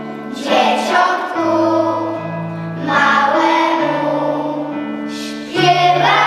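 A children's choir singing a Polish Christmas carol (kolęda) in unison over instrumental accompaniment that holds long low notes, the singing swelling at the start of each new phrase.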